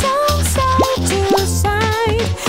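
Bouncy children's song backing music, with three quick rising 'bloop' popping sound effects laid over it.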